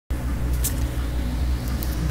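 A steady low rumble with faint hiss above it.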